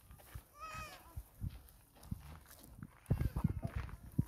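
A farm animal gives one short, wavering bleat about a second in. Near the end comes a quick run of loud, close rustling and knocks from the livestock at the hay feeder.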